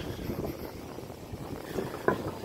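Steady low rumble of wind on the microphone and road noise from riding a bicycle along a street.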